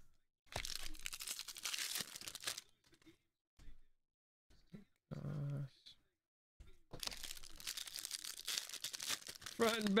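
Crinkling and tearing of a foil trading-card pack wrapper and handling of the cards, in two bursts of about two seconds each, with a short vocal sound between them and a voice starting near the end.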